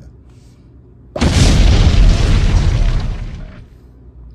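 An explosion sound effect: a sudden loud boom about a second in, then a rushing noise that holds for about two seconds and fades out.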